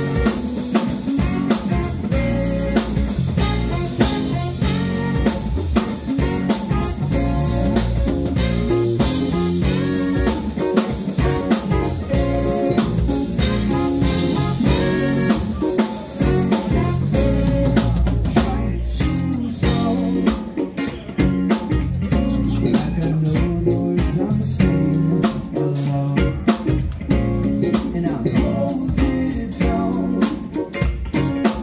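Live funk band playing an instrumental passage: drum kit, electric bass, electric guitar and a Roland Juno-DS keyboard, loud and steady with a regular drum beat.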